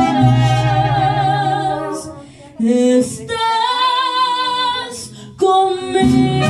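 Mariachi band playing and singing, with held, wavering melody notes over a steady bass. About two seconds in it thins to a softer single gliding melody line, then the full band comes back in loudly just before the end.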